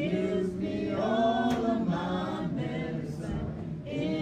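Congregation singing a gospel song a cappella, voices holding and sliding between notes.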